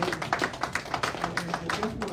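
Congregation clapping: quick, uneven claps from a few people, several a second.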